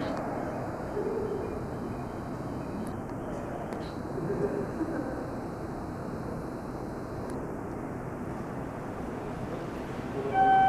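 Steady background noise of a railway station concourse, with faint voices about a second in and again around four to five seconds in.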